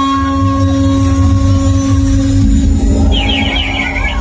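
Loud music played through a DJ sound system's speaker stacks, with heavy bass and long held notes. Near the end a quick, high warbling figure comes in.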